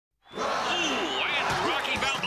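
Several excited voices shouting at once, starting about a quarter second in, with a couple of punch impacts landing near the end.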